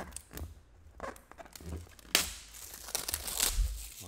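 Plastic wrapping being torn off a sealed trading-card box and crinkled in the hands, with scattered crackles and one louder rip about two seconds in.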